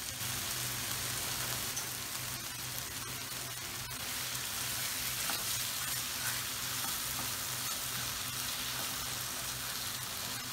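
Sliced red onion, crushed garlic and cumin sizzling steadily in oil in a frying pan over medium heat, as they fry slowly, stirred with a wooden spoon.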